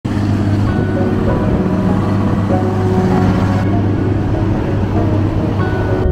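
Calm background music of long held notes laid over a steady, loud rumbling noise. The upper hiss of the noise drops away about three and a half seconds in.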